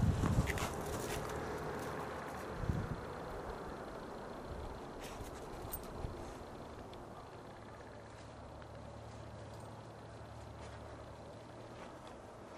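Outdoor ambience on a handheld camera microphone: a few dull handling bumps or footsteps in the first seconds, then a faint steady outdoor noise with a low hum underneath.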